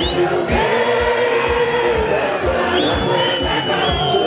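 Music with a steady drum beat and a large crowd singing and chanting along, with long held notes.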